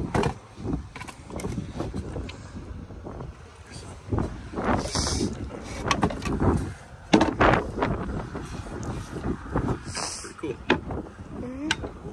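Irregular wooden knocks and clunks as a Singer sewing machine is tipped down into its wooden cabinet and the cabinet's hinged top is folded shut over it, with short rustles of handling between the knocks.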